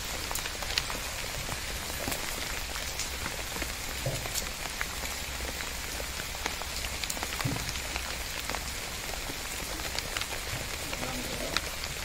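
Steady rain: an even hiss with scattered drops ticking.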